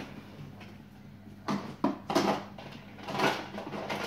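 Quiet kitchen room tone with a steady low hum, and a voice off-camera about two seconds in.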